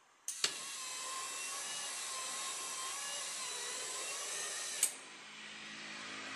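Electric motor of an automatic flexible blackboard machine driving its toothed timing belt, which rolls the surface over from blackboard to projection screen. It makes a steady whining drone for about four and a half seconds, with a click as it starts and another as it stops.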